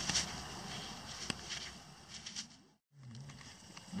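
Faint rustling and a few light clicks of a gloved hand handling a coin over dry leaves and grass. The sound drops out to silence for a moment a little before three seconds.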